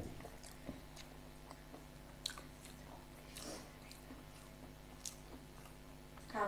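A person chewing and biting into a fried samosa, faint, with small crisp crunches and mouth clicks scattered through, two sharper ones a little over two seconds in and about five seconds in.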